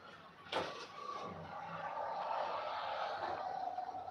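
Faint handling noise of small metal earrings being picked up by hand: a sharp click about half a second in, then a low, steady rubbing.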